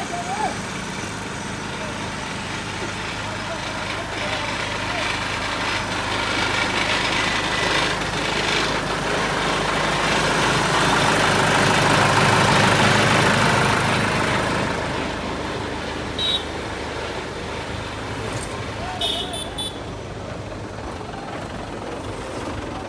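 Diesel engine of a trailer-mounted concrete pump running steadily, growing louder towards the middle and easing off again.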